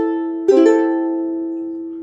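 Fender Venice soprano ukulele with a bone nut and saddle: a plucked note rings, then a chord is strummed about half a second in, with a second stroke just after, and rings out, slowly fading.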